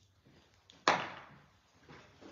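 A single sharp knock a little under a second in, dying away over about half a second, against quiet room sound.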